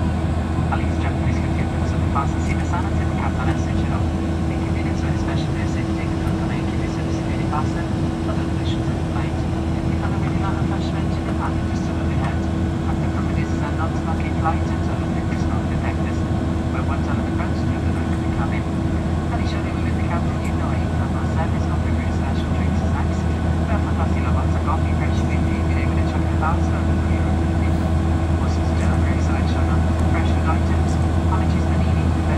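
Cabin noise of a Boeing 737-800 in flight, heard from a window seat over the wing: the CFM56 turbofans give a steady low drone with a constant hum above it.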